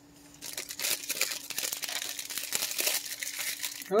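Plastic cracker wrapper crinkling as it is handled, a dense crackle lasting about three seconds.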